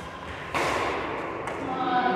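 Badminton rally play on an indoor court: a racket striking the shuttlecock and the thuds of footsteps on the court floor, echoing in the hall. Voices come in near the end.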